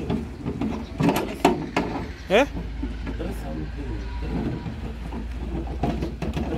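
A man's voice close to the microphone, with a rising "Eh?" about two seconds in, over a steady low rumble. A few sharp clicks come between one and two seconds in.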